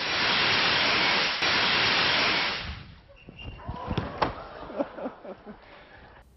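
A CO2 fire extinguisher used as a rocket, discharging with a loud steady hiss of escaping carbon dioxide. The hiss fades out about three seconds in, and a few sharp knocks follow.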